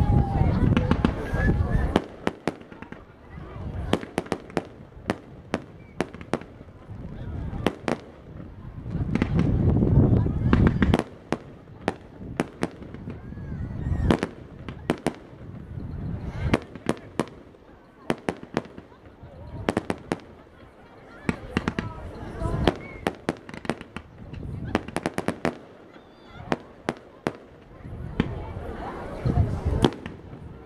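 Fireworks display: many sharp bangs and crackles of bursting shells, often in quick runs, with heavier low rumbling stretches in the first two seconds and again around ten seconds in.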